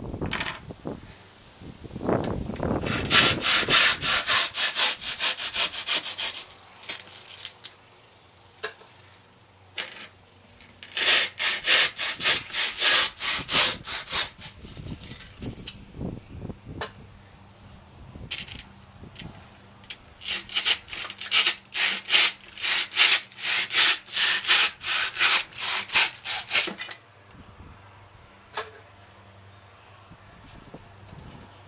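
A hand rasp scraping and shaving rigid urethane foam in quick back-and-forth strokes. There are three bursts of a few seconds each, with short pauses between.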